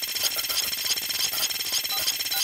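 Electronic glitch sting: dense digital crackle and rapid stuttering clicks with short high beeps, cutting off suddenly near the end.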